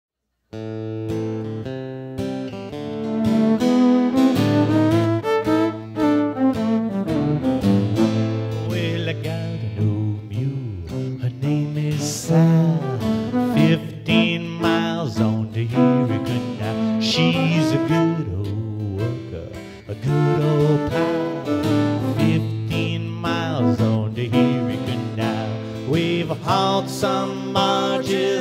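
Live acoustic guitar and fiddle playing the instrumental opening of a folk song. The music starts about half a second in, with the fiddle sliding between notes over the strummed guitar.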